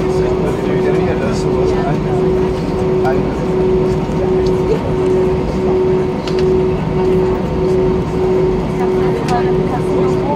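Airbus A319 cabin noise while taxiing: the engines run at idle with a steady hum, under indistinct voices in the cabin.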